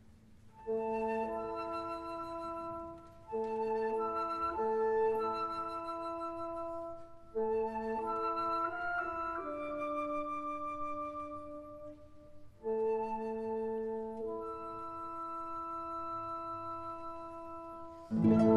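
Orchestra playing an instrumental passage of held, chord-like notes in four phrases, each starting after a brief dip in level.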